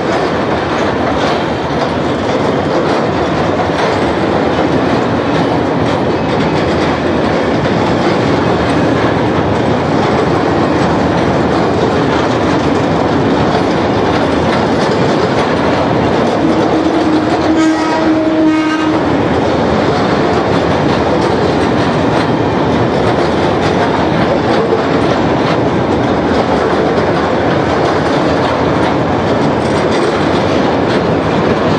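Freight train of flat wagons for carrying rails rolling steadily past, with loud continuous wheel-on-rail noise. A little past halfway, a horn sounds once for about two seconds.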